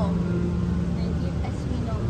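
Steady low rumble of an indoor hall with faint voices in the background, and a steady low hum that fades out in the first second.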